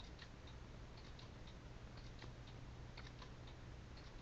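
Near silence: a low steady room hum with faint, scattered small clicks.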